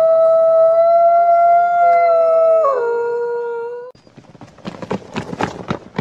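A wolf howling: one long call held on a steady pitch, dropping lower about two and a half seconds in and ending near four seconds, followed by a run of short, rough noises.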